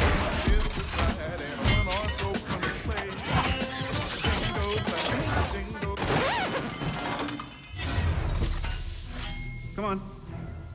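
Film sound effects of repeated metallic crashes, impacts and shattering as flying armour pieces smash around a workshop, over background music. The impacts are dense for most of the stretch and thin out near the end.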